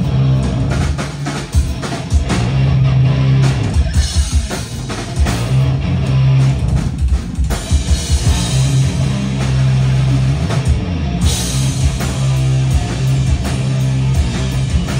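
Live stoner-metal band playing at full volume: heavy electric guitar and bass riffs over a pounding drum kit.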